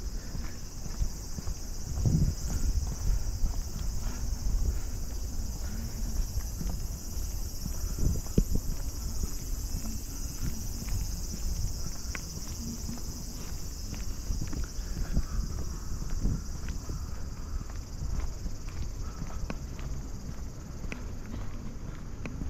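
Footsteps on an asphalt street close to the microphone, irregular soft thuds, over a steady high-pitched drone of summer cicadas.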